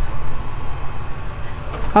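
Low, steady rumble of a film's opening soundtrack playing through a small projector's built-in speaker as the movie starts.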